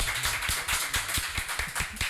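A small group of people applauding with rapid hand claps.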